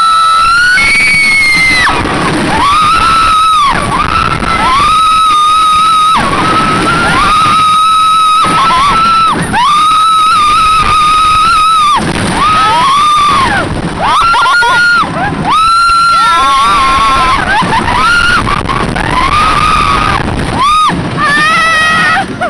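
Roller coaster riders screaming: long, high screams held for a second or two, one after another about every two seconds, over the rumble and rattle of a wooden coaster train running on its track.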